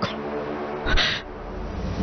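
A single slap across the face: one short, loud smack about a second in, heard over a quiet background music bed.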